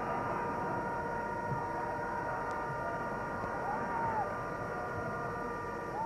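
Steady stadium crowd noise from the terraces during open play, heard through an old match broadcast. Several steady held tones sound through the first half, and a short rising-and-falling call comes about four seconds in.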